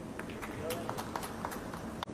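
Quiet snooker arena room sound between shots: a low background with faint voices and scattered light clicks.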